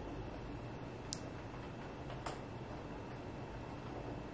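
Quiet, steady room tone with a low hum, broken by two short sharp clicks: one about a second in and another just over a second later.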